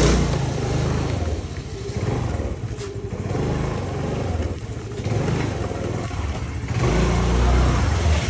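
Honda scooter's small single-cylinder engine running just after starting, revved up and eased off several times as it is ridden slowly over the threshold. The engine is loudest near the end.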